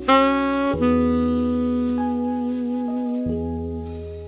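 TenorMadness custom tenor saxophone playing a slow jazz ballad melody: a short note, then a long held note with a slight waver from about a second in, over low sustained keyboard notes.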